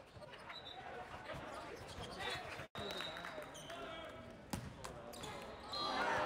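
A volleyball bounced on the sport-court floor, with one sharp knock a little past halfway, over the indistinct chatter of players and spectators in a large hall.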